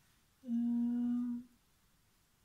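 A woman humming one steady, level-pitched 'mmm' for about a second: a thinking hum while she weighs something up.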